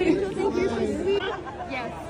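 Several people talking over one another in a close crowd: chatter with no distinct non-speech sound.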